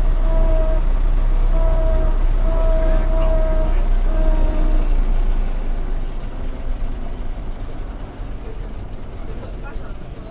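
1929 Leyland Lion bus heard from inside, its engine making a low rumble under a steady whine that breaks on and off. About halfway through, the whine stops and the sound eases off and grows quieter.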